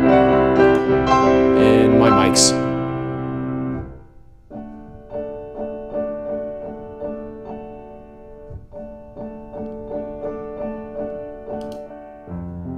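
Steinway piano recorded in ORTF stereo with small-diaphragm condenser mics: a loud passage of sustained chords that dies away about four seconds in, then a softer passage of repeated notes, about two a second. Partway through, playback switches from the Neumann KM84 pair, which sounds a little darker, to the Herald SWM100 pair, which has a more extended high end.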